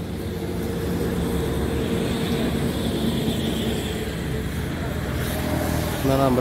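A motor vehicle engine running steadily, a low rumble with a steady hum, amid road traffic noise.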